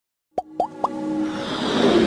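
Cartoon intro sound effects: after a moment of silence, three quick rising 'bloop' pops, then a swelling whoosh with held tones that builds louder as an intro jingle begins.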